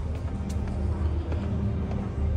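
Footsteps going down a stairway, a few faint steps, over a low steady rumble.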